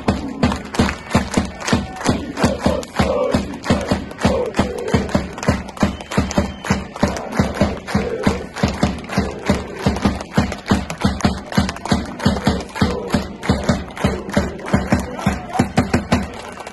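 Football supporters chanting in unison to a fast, steady beat, about three or four beats a second.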